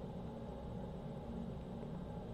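Quiet, steady low background hum of room tone, with no distinct sounds.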